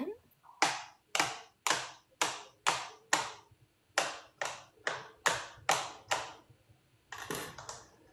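Kitchen knife chopping strawberries on a cutting board: a steady run of sharp strokes, about two a second, then a short pause and a quick cluster of cuts near the end.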